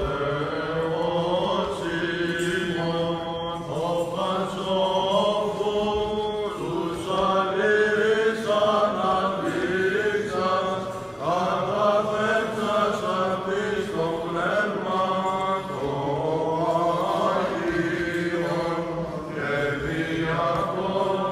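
Byzantine chant sung by male voices: a melodic line moving in phrases over a steady held low drone.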